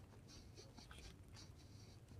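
Near silence, with several faint, short scratchy rustles spread through it.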